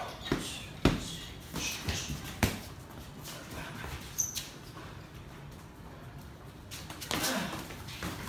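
Sparring on a tiled floor: gloved strikes slapping and feet shuffling, a few sharp smacks with the loudest about a second in and about two and a half seconds in.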